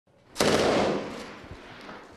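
Machine gun firing through a hole in a cinderblock wall: a loud report begins suddenly about half a second in and rings in the room before dying away over about a second.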